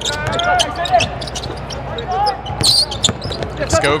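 Basketball being dribbled on a hardwood court: a string of sharp bounces during live play, standing out clearly with little crowd noise.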